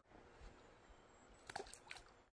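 Near silence, with a few faint clicks about a second and a half in.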